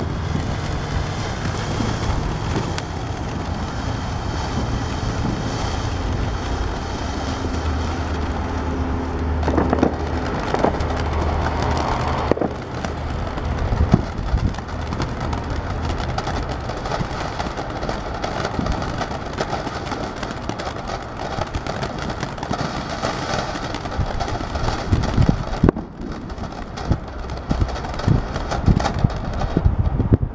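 A World Class Fireworks Paparazzi ground fountain burning: a steady rushing spray of sparks with crackling running through it. Near the end the spray thins and separate sharp pops stand out.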